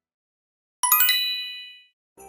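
A bright chime sound effect: a quick run of high, bell-like dings struck one after another a little under a second in, ringing out and fading within about a second.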